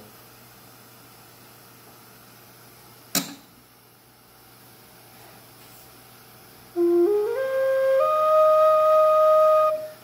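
River cane Native American flute played in a rising run of four or five short notes that ends on a longer held note, a test of the pitch of a finger hole just burned larger; the note comes out really close to, but not quite, in tune. Before the playing there is only low room sound and one sharp click about three seconds in.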